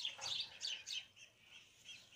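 Small songbirds chirping outside an open window: a quick run of short, high chirps, thinning out after about a second.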